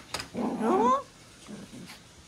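Six-month-old puppy giving one short whining call that rises in pitch, about half a second long, just after a light tap.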